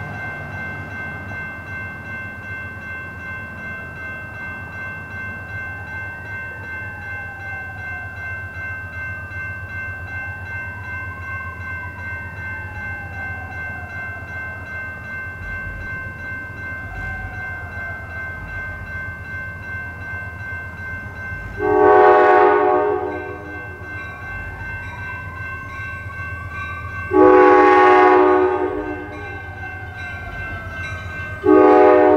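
Approaching Amtrak passenger train, a steady low rumble, then its air horn sounding two long blasts, one about two-thirds of the way in and one near the end; the horn blasts are the loudest sound.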